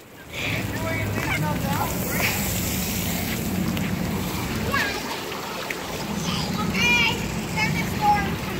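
Steady rush of water spraying from a playground sprinkler close to the phone, with children's voices faint in the background.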